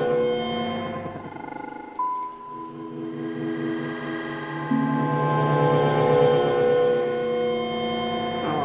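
Granular synthesis in netMUSE: sampled grains played back as expanding wavefronts reach them, building overlapping sustained pitched tones into an ambient texture. The layers swell and shift as grains are triggered, with a new higher tone entering about two seconds in and the lower notes changing near five seconds.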